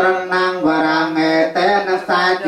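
Voices chanting Pali Buddhist verses in a steady, near-monotone recitation.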